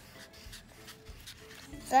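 A wax crayon scratching on paper in short strokes as a drawing is colored in.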